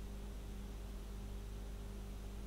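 A steady low hum with a faint hiss over it, unchanging throughout.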